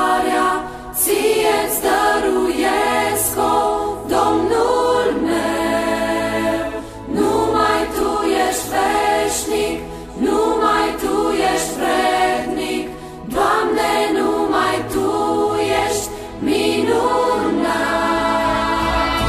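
Background music: a choir singing a slow song in phrases a couple of seconds long, each separated by a brief dip, over a low held note.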